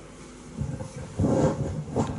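Low, uneven rumbling noise from a PA speaker as its volume is turned back up, coming in about half a second in.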